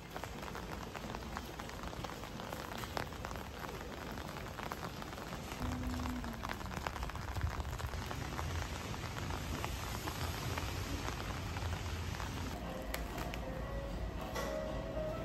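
Steady rain falling: an even hiss dotted with many small, sharp drop ticks, with a low rumble joining about halfway through.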